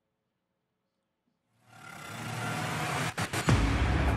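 Dead silence for about a second and a half, then a produced transition sting: a rising whoosh that swells, a few sharp hits, and a loud deep boom near the end, leading into a radio segment intro.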